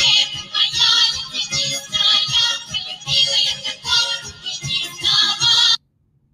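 Russian folk choir of women singing in bright, open chest voice over instrumental accompaniment with a steady beat. It cuts off suddenly near the end as the playback is paused.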